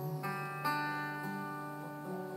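Steel-string acoustic guitar played solo between sung lines: notes are struck twice in the first second and left ringing, fading slowly.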